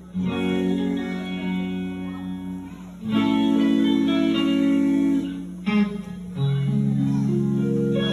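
Electric guitar playing a slow gospel intro of long sustained chords, changing chord about every three seconds.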